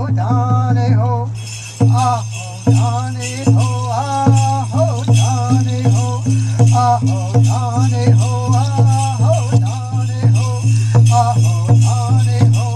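Powwow-style music for the dance: singing over a steady drum beat, with jingling bells throughout.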